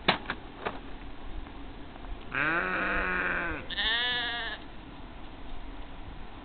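Sheep bleating twice, a long call of over a second followed straight away by a shorter, higher one. A few sharp clicks come in the first second.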